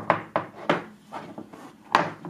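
Aluminium tin box handled on a wooden table as its stiff hinged lid is worked at to open it: a few sharp metallic knocks and clicks with light rubbing between, the loudest near the end.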